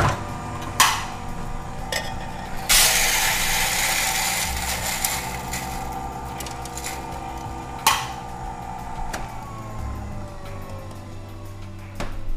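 Guatemala Lab burr coffee grinder grinding coffee beans to a medium grind. A click is followed by about five seconds of loud, dense grinding noise that stops with a click, and then the motor winds down with a falling whine.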